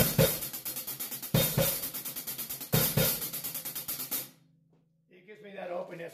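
Drum kit: rapid single strokes on the hi-hat, played as single-stroke fours, with a heavier accented hit opening each phrase. The phrase comes three times, about every second and a half, then stops about four seconds in. A few quiet spoken words follow near the end.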